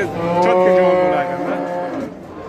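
A cow mooing: one long, steady call that lasts nearly two seconds and fades slightly toward its end.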